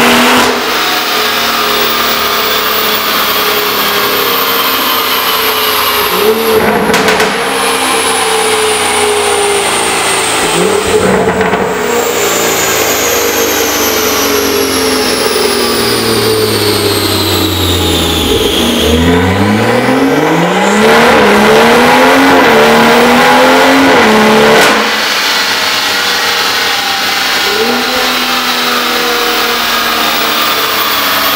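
BMW M140i's turbocharged B58 straight-six, through a stainless steel performance exhaust with de-cat downpipe and the exhaust flap closed, revving hard on a chassis dyno. The engine note climbs and drops sharply at gear changes about 7 and 11 seconds in, sags and then climbs steeply again, is loudest for a few seconds before cutting back suddenly about 25 seconds in.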